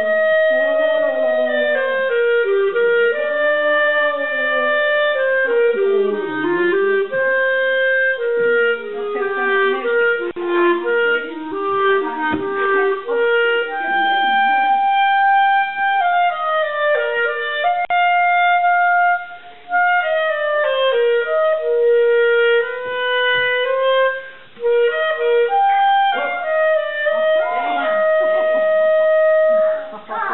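A clarinet playing a quick melody of many short notes, with two brief breaks for breath around the twentieth and twenty-fifth seconds.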